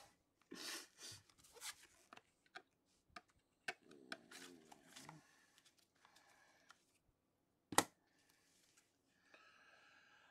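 Faint rustling and light clicks of gloved hands handling a rigid plastic card holder, with one sharper plastic click about eight seconds in.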